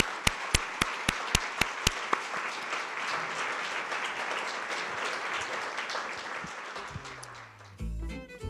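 Audience applauding. For the first two seconds one clapper close to the microphone stands out with loud, sharp claps at about four a second. The applause dies down near the end as music comes in.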